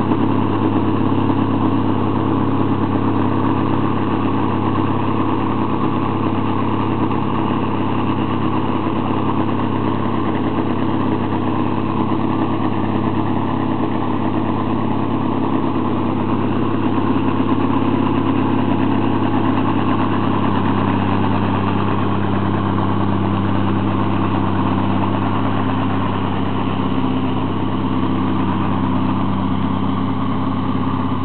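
M52A2 military 6x6 tractor's multifuel six-cylinder diesel engine pulling steadily under heavy load as it tows a lowboy semitrailer carrying an excavator up a hill, a constant drone that holds its pitch with only slight wavering.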